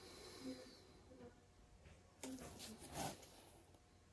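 Near silence: room tone with a few faint, soft handling rustles and clicks about two to three seconds in.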